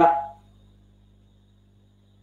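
A man's voice trails off in the first half second, then a pause with only a faint, steady low electrical hum.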